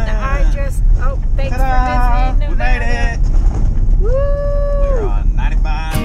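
Excited wordless singing and whooping inside a moving vehicle, with one long held note about four seconds in, over the steady low rumble of the road.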